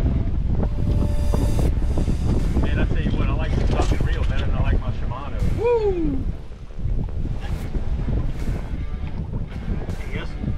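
Wind buffeting the microphone as a loud, constant low rumble, with a few indistinct voices in the middle and a short falling tone about halfway through.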